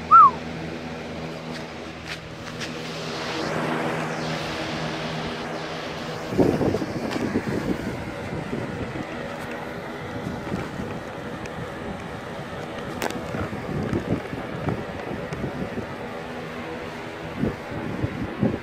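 Lasko Weather Shield box fan running on its high setting: a steady motor hum with the rush of air from the blades, and from about six seconds in the airflow buffets the microphone. A short, loud, high chirp comes right at the start.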